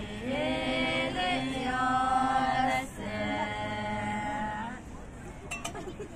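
Several voices singing together without accompaniment, in three long, drawn-out phrases with held notes. The singing stops about five seconds in.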